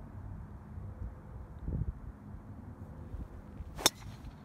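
A driver striking a golf ball off the tee: one sharp, short crack near the end, over steady low background noise.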